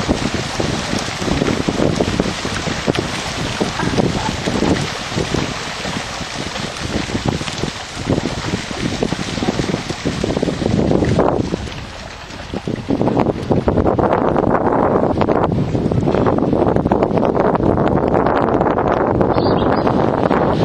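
Strong wind buffeting the microphone from a small boat on the water, a steady rush with a brief lull about twelve seconds in.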